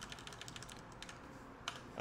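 Faint computer keyboard keys clicking in quick succession, with one louder click near the end.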